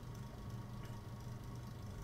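Faint room tone with a steady low hum during a pause in speech.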